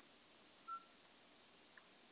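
Near silence, with one short, faint beep a little under a second in.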